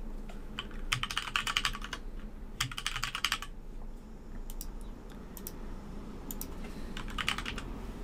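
Computer keyboard typing in three quick runs of keystrokes, entering a password, retyping it, then a short answer, with a few single clicks in between.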